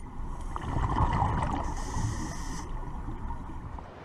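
Underwater sound around a diver at a ship's propeller: a low rumble with bubbling and gurgling, loudest about a second in and slowly fading.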